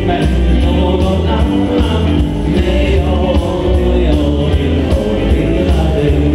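Dance-band music with a singer over a steady, bass-heavy beat.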